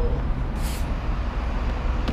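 Steady low rumble of outdoor urban background noise, with a faint brief scuff about half a second in.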